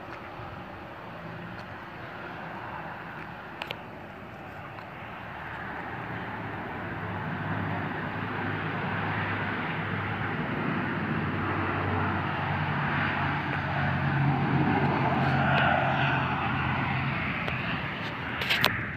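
ATR 72-600 twin turboprop engines running as the airliner taxis after landing, the engine noise building steadily over several seconds and easing slightly near the end.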